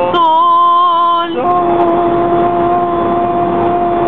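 A man singing long held notes over the hum of the moving car: one steady note of about a second, a brief break, then a second note held steady for nearly three seconds.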